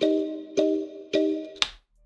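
A time-stretched synth melody loop playing back in FL Studio's resample mode, which has shifted its key. Three decaying chords are struck evenly, a little over half a second apart, then a sharp click comes and playback cuts off just before the end.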